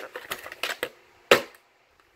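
Plastic clamshell VHS case and cassette handled, giving a quick run of small plastic clicks and rattles, then one sharp snap about a second and a half in as the cassette is pulled free of the case.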